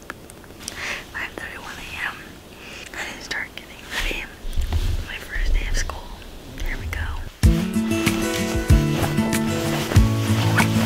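Soft whispered speech close to the microphone. About seven seconds in, music starts suddenly with steady sustained tones and a beat.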